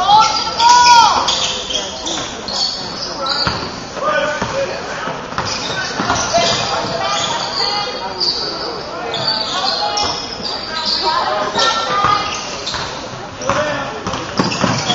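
Basketball game on a hardwood gym court: the ball bouncing on the floor, short high sneaker squeaks and players' voices calling out, echoing in the large hall.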